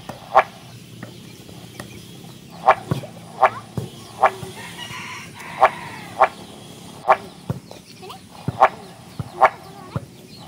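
Chickens clucking: short, sharp calls repeated irregularly about once a second, with a fainter, longer call near the middle.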